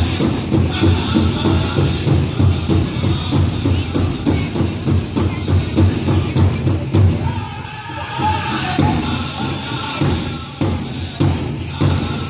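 Powwow drum group playing a contest song for jingle dress dancers: a big drum struck in a steady beat under high-pitched group singing. Past the middle the drum drops back for a moment while the singing carries on, and a thin metallic shimmer of jingle cones rides on top.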